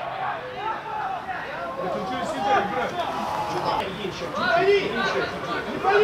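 Players and coaches shouting and calling out during a football match, several voices overlapping.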